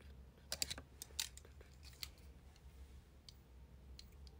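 A quick cluster of sharp clicks and taps from about half a second to a second and a quarter in, one more near two seconds, then a few faint ticks, over a low steady hum: small hard objects being handled close to the microphone.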